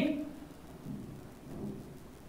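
A man's spoken word ending, then a quiet pause with two faint, short, low sounds, about a second in and near the end.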